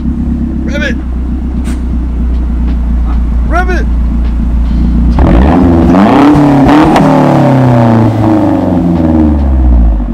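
Mazdaspeed3's turbocharged four-cylinder idling through its exhaust. About five seconds in it is revved up sharply, then settles back toward idle over a few seconds.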